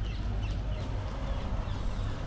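Outdoor street background noise: a steady low rumble under a faint even hiss.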